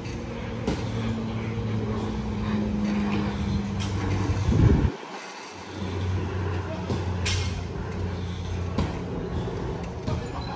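A low, steady engine-like hum with a few held low tones. It cuts off abruptly just before the middle after a brief louder moment, and a lower steady hum returns about a second later.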